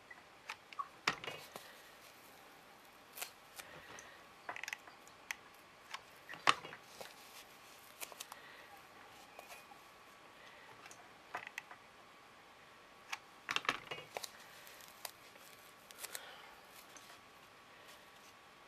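Scattered light clicks, taps and short crinkles of hands working craft materials, a packing-foam disc edged with blue material and a hot glue gun, with quiet room tone between; one sharper click about six and a half seconds in is the loudest.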